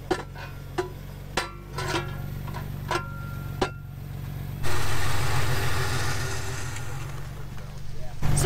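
A vehicle engine idling steadily, with several short knocks and clunks in the first four seconds as plastic wheel chocks are set against a tire on icy ground. About four and a half seconds in, a louder rushing, hissing noise takes over.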